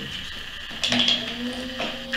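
Electric potter's wheel running with a steady motor hum as wet hands shape the spinning clay; a higher whine comes in about halfway through, with a couple of brief wet rubbing sounds.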